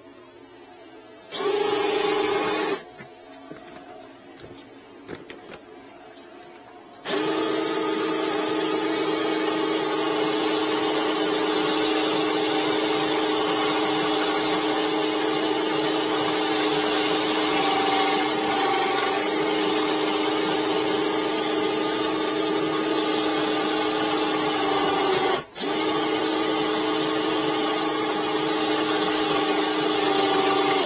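A cordless drill drives a RIDGID FlexShaft drain cleaner, spinning its cable inside a blocked drain pipe to break up the clog. There is a short burst about a second in, then a steady high-speed whine from about seven seconds in. It stops briefly once near the end.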